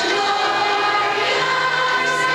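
A group of young schoolchildren singing a song together as a choir, in long held notes.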